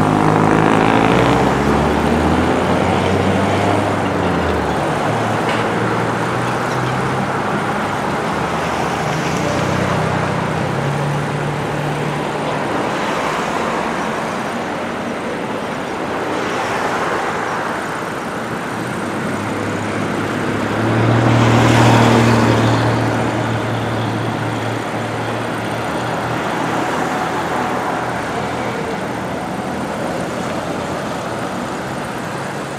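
Road traffic: cars and pickup trucks driving past one after another, engines running and tyres on the asphalt, each swelling and fading as it passes. The loudest pass-by comes about two-thirds of the way through.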